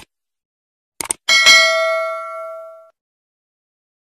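Subscribe-button animation sound effect: a short click at the start and two quick mouse clicks about a second in, then a bright bell ding that rings and fades away over about a second and a half.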